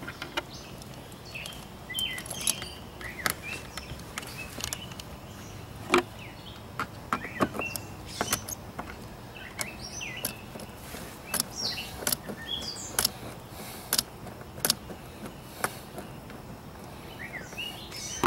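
Scattered small clicks and taps of hands handling a plug, wires and a screwdriver on a metal console, with birds chirping repeatedly in the background.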